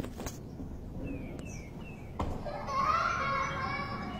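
Children's voices in the background, with one high child's voice calling out for about a second past the middle.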